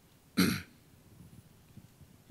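A man clearing his throat once, briefly, about half a second in, close to the microphone.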